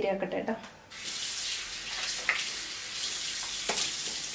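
Water running from a kitchen tap in a steady hiss, starting about a second in, with one short sharp splash or knock near the end.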